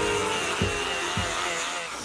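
Electric eraser whirring steadily as it rubs across paper, with music playing underneath.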